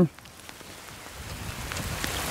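A rain shower setting in: steady rain noise that grows a little louder toward the end.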